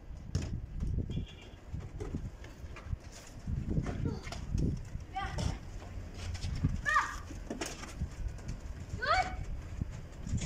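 Children's voices calling out during a game: a few short, high shouts about five, seven and nine seconds in, over an uneven low rumble.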